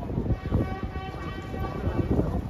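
A single steady horn-like tone, held for about a second and a half, over wind rumble and background voices.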